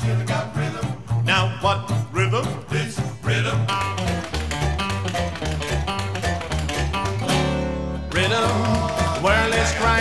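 Upbeat band music: an upright bass plays a stepping, walking line under strummed acoustic and archtop guitars. About seven seconds in, one long note is held for under a second.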